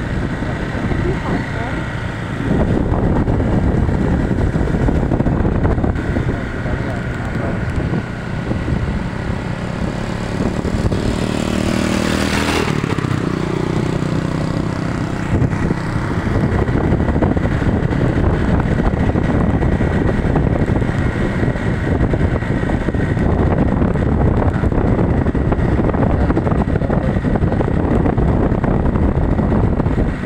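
Motorcycle engine running with wind and road noise, heard from the motorcycle as it rides along. Roughly halfway through, a louder swell with a falling pitch passes by.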